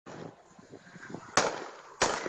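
Gunshots: a sharp crack about a second and a half in, and a second one right at the end, each with a short echo.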